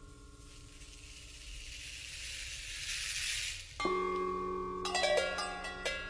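Percussion: a seed shaker rattles softly and swells louder for about four seconds. It is cut off by a sudden struck metal ringing, and a second later a quick cluster of sharp cowbell strikes rings out.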